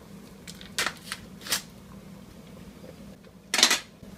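Foil wrapper of a block of cream cheese crinkling as it is slit open with a knife and peeled back: a few short crinkles, then a louder crinkle near the end.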